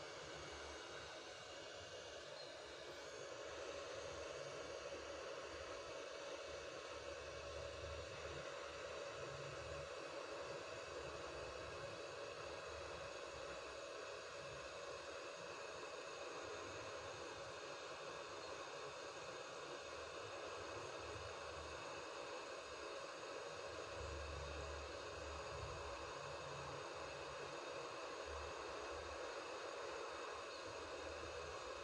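Faint steady hiss that grows slightly louder a few seconds in, with irregular low rumbles.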